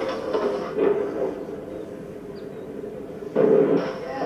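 Skateboard wheels rolling on concrete, from the skate clip's own soundtrack playing back in After Effects' looping RAM preview. It is a steady rumble that fades after about a second and starts again abruptly near the end as the preview loop restarts.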